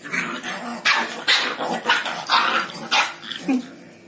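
Two puppies play-fighting, barking and growling in a quick run of short, loud bursts that die away shortly before the end.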